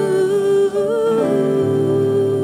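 A woman singing a slow worship song, holding one long note that lifts briefly about halfway through and settles back, over soft guitar accompaniment.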